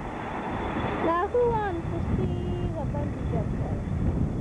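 People's voices with no clear words, loudest about a second in, over a steady low rumble.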